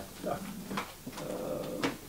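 A short spoken 'da', then a lull in a small meeting room with faint voices and two sharp knocks or clicks about a second apart, from something handled on the tables.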